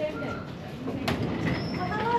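Airport terminal ambience: a steady low rumble with scattered voices, a sharp click about a second in, and a short high beep just after it.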